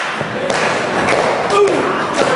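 A few heavy thuds from wrestlers striking each other and slamming against the ring in a corner, over shouting crowd voices.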